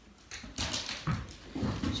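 A pet dog making small noises and moving about close by, in uneven patches of rustling and snuffling.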